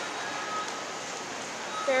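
Steady background noise of a large indoor mall space, an even hiss with a faint thin high tone running through it; a man's voice starts just at the end.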